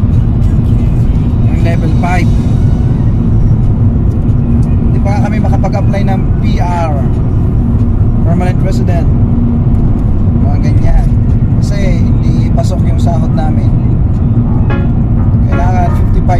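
Steady road and engine rumble heard from inside the cabin of a moving car.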